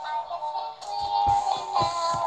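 Electronic tune with a synthesized singing voice, a melody of held notes stepping up and down, with a few soft thumps of handling.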